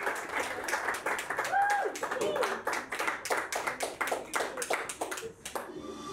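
A small audience clapping by hand, with a few voices calling out over it; the clapping dies away near the end.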